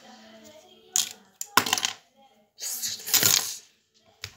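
Small hard objects clattering: a sharp click about a second in, then a burst of rattling and a second, longer stretch of rattling and scraping.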